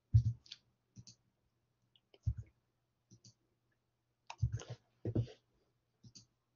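Computer mouse clicks and light knocks, in small scattered groups: near the start, about two seconds in, and between four and five seconds in.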